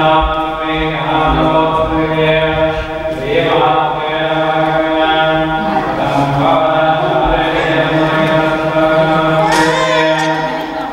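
A Hindu priest chanting Sanskrit mantras during a puja: a man's voice reciting in a steady, near-monotone chant of long held notes.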